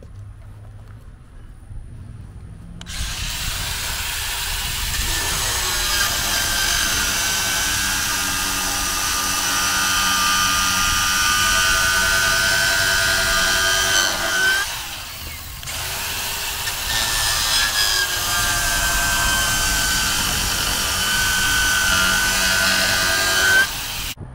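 Battery-powered angle grinder with a 16-flute PVC pipe beveler, starting about three seconds in and cutting a bevel into the end of a PVC pipe: a steady whine over the grinding of plastic. It eases off briefly just past halfway, then stops just before the end.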